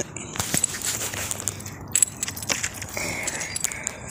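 Handling and walking noise: scattered clicks and rustling with a light metallic jingle, like keys or loose metal jangling on someone on the move.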